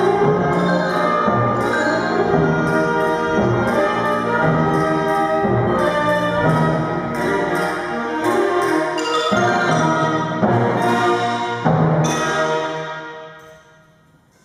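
Children's wind and percussion band playing, with mallet percussion and clarinets among the instruments. The piece ends on a final loud chord about twelve seconds in, which rings out and fades away.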